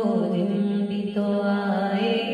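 A woman singing a naat, a devotional Urdu song, solo into a microphone, holding long notes that waver and bend in pitch.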